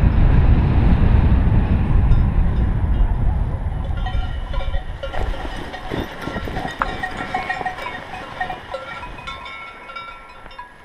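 Wind buffeting the microphone, fading away over the first few seconds, then cowbells ringing off and on across the meadow.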